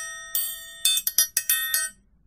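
Steel orchestral triangle struck with a steel beater. Each strike rings on in several bright, high tones. One ring fades at the start, then a quick, uneven run of strikes follows from about a second in.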